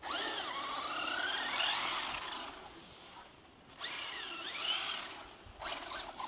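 Traxxas Slash 4x4 RC truck's electric motor and drivetrain whining, its pitch rising and falling as the throttle is worked, in two bursts with a short pause between, while the wheels spin on ice.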